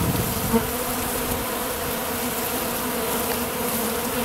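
Many honeybees buzzing close up around a pollen feeder, a steady hum of wingbeats.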